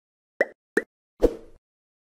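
Three quick pop sound effects from an animated intro, the third a little longer and deeper than the first two.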